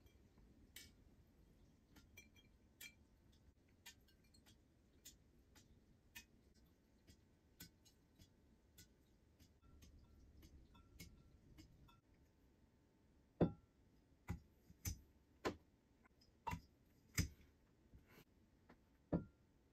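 Mostly near silence with faint ticks about once a second while mead is siphoned into glass bottles, then, from about two-thirds in, a series of about six sharp knocks and clicks as the glass bottles and a hand corker are handled.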